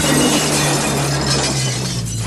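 Loud, harsh shattering-and-crackling noise sound effect over a low steady drone, dipping slightly near the end.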